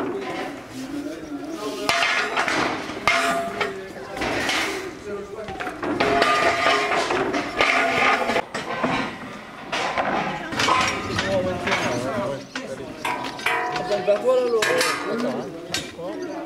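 Repeated metal clanks and knocks as stage deck panels and a steel stage frame are carried and set down, with people talking among the work.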